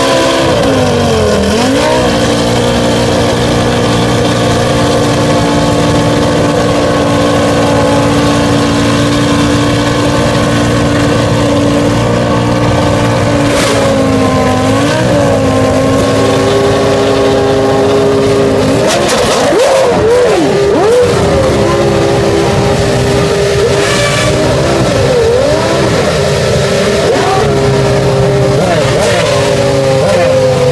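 Formula One car engines running at a fast, steady idle, several at once, with short throttle blips: one around halfway through and a cluster about two-thirds of the way through.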